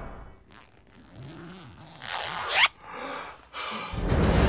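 Editing sound effects for a title card. A whoosh fades out at the start. About two seconds in, a rising swish builds and cuts off suddenly; a short, softer sound follows.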